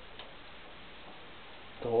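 Faint clicks of a screw being turned in by hand into a computer case, over a steady low hiss. A voice speaks briefly at the end.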